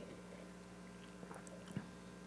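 Quiet room with faint sipping and swallowing as a man drinks beer from a glass, and a single soft tap near the end.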